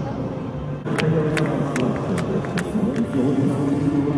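A column of soldiers marching in step, boots striking the pavement in unison. Sharp, regular footfalls start about a second in, at about two and a half a second, over a steady lower background din.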